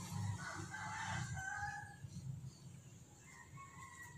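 A rooster crowing in the distance: one faint, drawn-out crow lasting about a second and a half.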